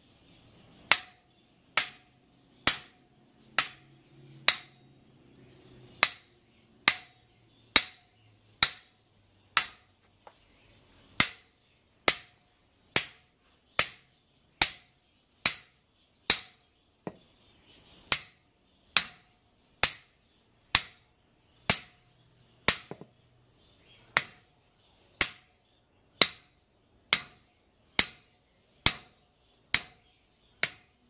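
Hammer blows on the top of a steel reinforcing bar, driving it down into a concrete sidewalk: sharp metallic clanks about once a second, each with a brief ring, with a few short pauses between runs of strikes.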